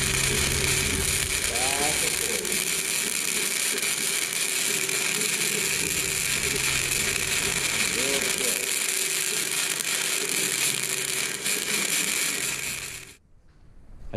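Wire-feed welder arc crackling steadily as a bead is laid on steel, with a slow side-to-side weave, then cutting off abruptly about 13 seconds in when the trigger is released.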